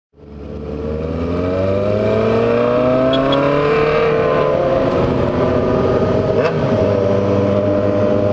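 Yamaha XJ6 motorcycle's inline-four engine, heard from the rider's seat, pulling up through the revs and then holding a steady pitch under wind noise. The sound fades in at the start.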